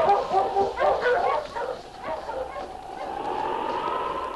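A sled dog team barking and yelping as it starts off, in a radio-drama sound effect. The barking thins out after about two seconds and gives way to a single held tone that slowly rises in pitch.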